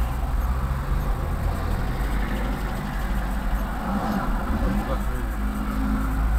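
Car engine idling in a stationary car, heard from inside the cabin as a steady low rumble, with traffic passing in the next lane.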